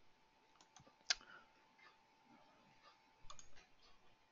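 Computer mouse clicks: one sharp click about a second in, a few fainter ones around it, and a short cluster of soft clicks near the end, over quiet room tone.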